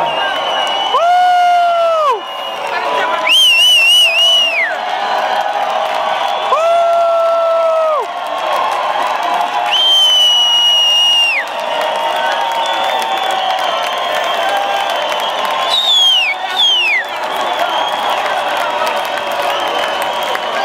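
Large concert crowd cheering between tracks, with several long whoops and high whistles held for a second or so, each falling off in pitch at the end.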